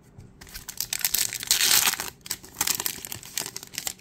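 A foil trading-card pack wrapper being torn open and crinkled by hand, a crackling rustle that peaks about a second in.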